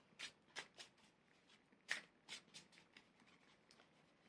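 Faint clicks and flicks of tarot cards being handled as a card is drawn from a Rider-Waite deck, a scattered run of short ticks over about three seconds.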